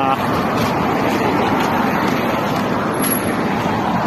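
Cars driving past on a busy city street, a steady traffic noise.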